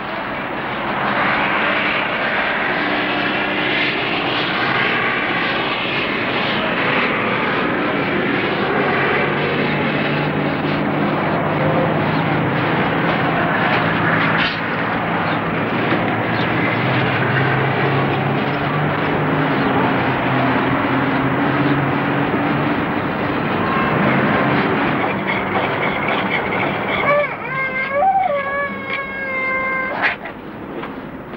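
Loud, steady engine noise with a few low hums that shift slowly in pitch. About three seconds before the end, a brief wavering pitched sound with several overtones rises above it.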